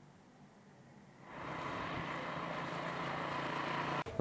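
Near silence, then about a second in the steady noise of street traffic starts, with a vehicle engine running.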